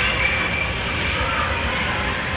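Steady hubbub of a busy indoor shopping mall: a low rumble under distant crowd voices.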